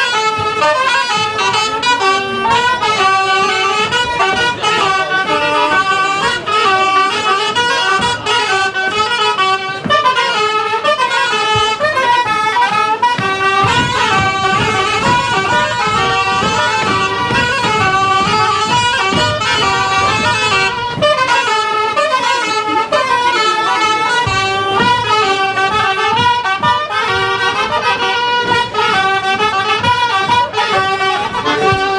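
Small live wind band with brass playing a lively folk dance tune in a steady, continuous rhythm.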